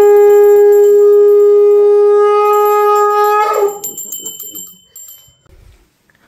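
Conch shell (shankh) blown in one long, loud, steady note of about three and a half seconds that wavers briefly as it breaks off, marking the close of a Hindu aarti.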